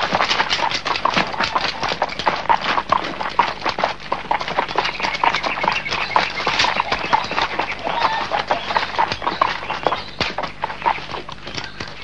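Horse hoofbeats together with the running footsteps of several men, a dense, irregular clatter of knocks.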